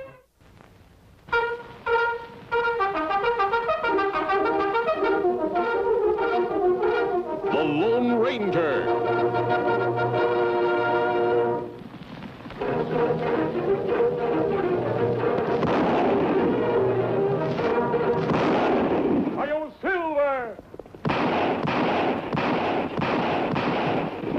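Brass-led orchestral theme music. It starts about a second in after a brief silence, dips briefly about halfway, and swells again near the end.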